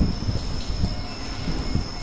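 Low, uneven rumbling noise with a faint steady high whine running through it.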